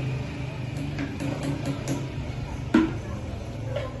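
A small spoon stirring water in a plastic pitcher to dissolve the preservative, ticking lightly against the side of the pitcher about five times, then one louder knock.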